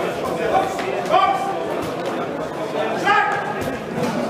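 Shouts and chatter from the crowd around a boxing ring, echoing in a large sports hall, with short calls rising out of a steady murmur about a second in and again near the end.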